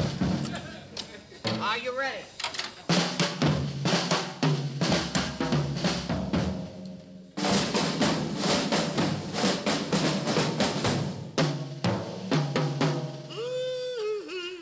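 A big ensemble of drum kits playing together: fast drum and cymbal strokes in a dense rhythm. The drums drop back briefly just past halfway, then come back in loud.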